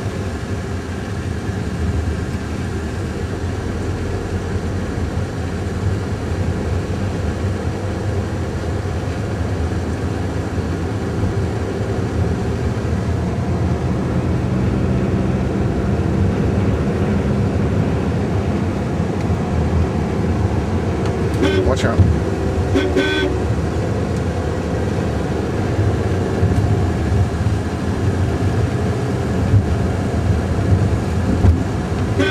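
Engine and road noise of a moving car heard from inside the cabin, a steady low drone. A horn toots twice in quick succession about two-thirds of the way through.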